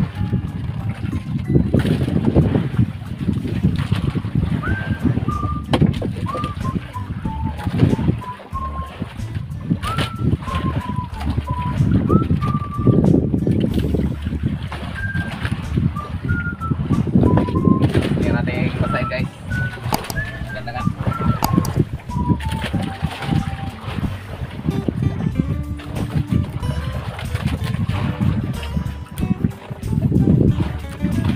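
Rumbling wind and sea noise on the microphone aboard a small boat, swelling and easing every few seconds. A thin, high melody of single stepping notes runs through the middle.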